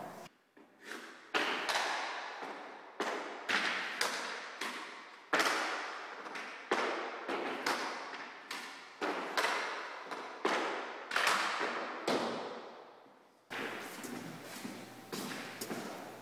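Hockey puck being saucer-passed back and forth between two sticks: a run of sharp clacks as the blades strike and receive the puck, each ringing out in the rink, about one every half second to a second.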